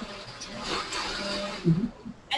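Countertop blender mixing a thick ice cream base of dates, cacao and vanilla, heard faintly and muffled through a video-call connection, with a brief voice sound near the end.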